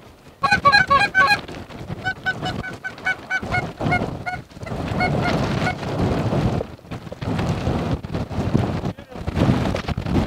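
Lesser Canada geese calling as a flock flies in overhead: rapid runs of short, high honks and yelps, densest in the first second and a half, then thinning out, over a low rumble of wind on the microphone.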